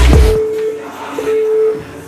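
Rap music with a heavy bass line cuts off about half a second in. After that comes the whirr of a Concept2 rowing machine's air flywheel under hard rowing, with a hum that comes and goes about once a second.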